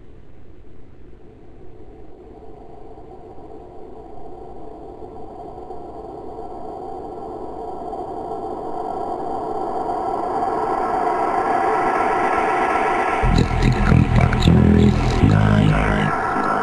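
Electronic house music fading in from silence: a hazy, droning synth build that grows steadily louder and brighter, then a heavy bass and kick drum beat comes in about 13 seconds in.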